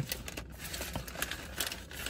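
Faint crinkling of a paper sandwich wrapper being handled, with a few small scattered clicks.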